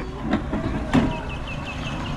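Outdoor market background: a steady low rumble with two brief louder sounds in the first second, then a quick run of high chirps, about ten a second, in the second half.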